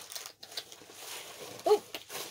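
Packaging rustling and crinkling as items are handled in an opened subscription box, soft and uneven with a few small clicks.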